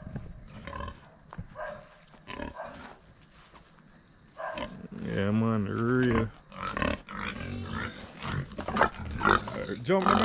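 Domestic pigs grunting in their pen, a string of short grunts with one longer, drawn-out low call about five seconds in.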